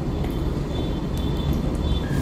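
A steady low rumble with no speech, with a faint thin high whine coming in about halfway through.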